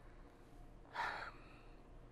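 Quiet room tone broken about a second in by one short, audible intake of breath through the mouth.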